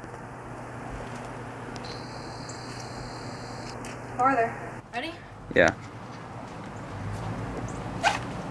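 Steady outdoor background noise with a faint low hum, broken by two brief spoken words about four and five and a half seconds in.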